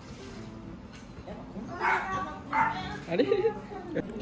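A dog giving three short, high calls in quick succession, starting about halfway through, with voices talking in the background.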